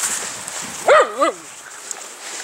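A schnauzer barking twice in quick succession, short high barks about a third of a second apart, while the dogs play in the snow.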